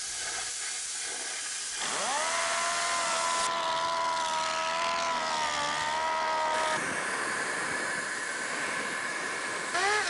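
Sound-effects track of a steady air hiss, with a machine whine that rises sharply about two seconds in, holds with a slight waver, and cuts off after about five seconds. A short rising swoosh comes right at the end.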